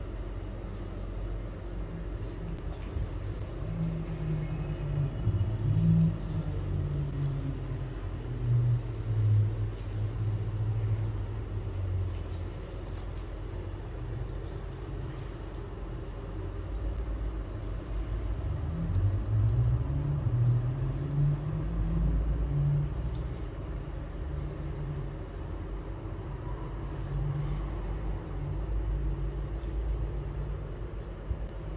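Low, muffled rumbling and rubbing of a terry-cloth hot towel being wrapped around a face and pressed down by hand, close to the microphone, swelling twice.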